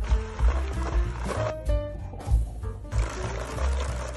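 Background music with a heavy, steady bass beat, over an electric hand mixer running as its beaters whip cookie dough in a stainless steel bowl.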